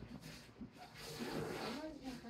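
Indistinct human speech, loudest in the second half.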